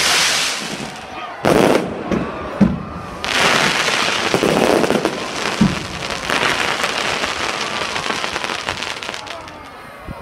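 Aerial fireworks bursting: a few sharp bangs in the first three seconds, then a dense run of crackling that fades near the end.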